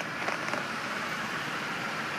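2005 Chevrolet Impala engine idling, heard from outside the car as a steady, even running noise, with a few light clicks near the start.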